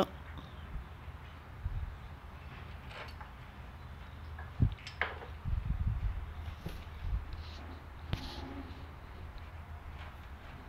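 Faint scattered clicks and small knocks of hand work, fingers and pliers on the speedometer cable's fitting at a motorcycle engine, over a low steady hum.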